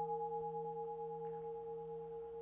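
Struck bell ringing on after the strike, a few steady tones slowly fading away.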